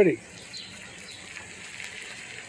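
A single spoken word, then quiet outdoor background with a few faint bird chirps.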